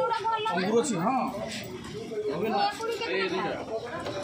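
Several people talking over one another in a market chatter.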